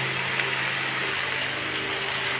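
Mango pieces in oil sizzling gently in a large steel pan on a gas stove: a steady low hiss with a faint hum beneath it.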